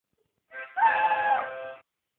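A harmonica chord blown briefly, with a Hungarian Vizsla howling along over it, the howl sliding up in pitch as it starts and dropping away at the end. It begins about half a second in and stops shortly before the end.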